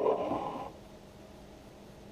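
Metal lid being twisted off a glass jar of pasta sauce: a brief gritty scrape that fades out within the first second, then quiet room tone.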